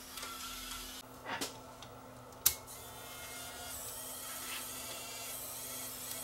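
Faint steady hum of a small motor in an opened Sony CCD-TR71 8mm camcorder, with a sharp click about two and a half seconds in and a softer click a little before it.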